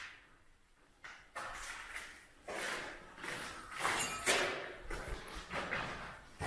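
Several scuffing, scraping footsteps on a grit-covered concrete floor, roughly one a second.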